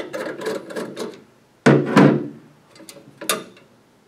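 A screwdriver working a metal retaining clip loose on the lens frame of a canopy light fixture: rapid clicking and scraping for about a second, then two loud thunks close together and a sharp click near the end.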